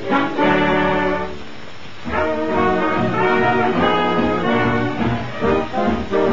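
Orchestral cartoon score led by brass, trombones and trumpets playing a tune. It drops to a softer passage about one and a half seconds in, then comes back in full.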